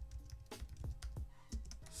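Typing on a computer keyboard: a run of irregular keystroke clicks, over faint background music.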